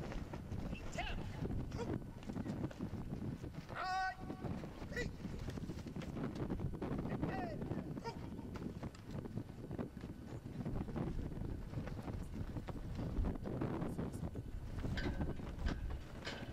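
Honor guard's dress shoes stepping on a concrete walk with scattered clicks and knocks, over wind rumbling on the microphone and faint murmurs from a standing crowd. A short, high squeak sounds about four seconds in.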